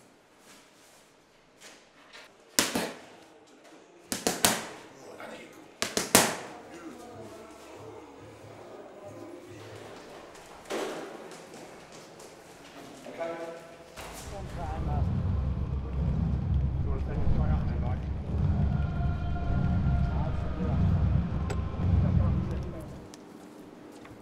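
Gloved punches landing on focus mitts: a single sharp crack, then two quick flurries of hits. Later a loud, deep, pulsing bass swells in and runs until shortly before the end, the arena's sound system heard from the walk-out tunnel.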